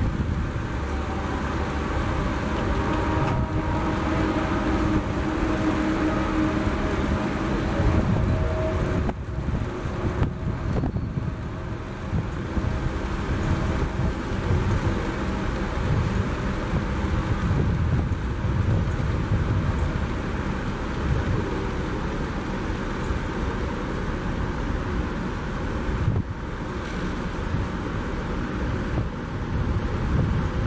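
Steady low rumbling background noise with no distinct sound events standing out.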